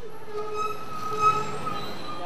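Street noise with a steady high-pitched squealing tone held for most of the two seconds, fading near the end.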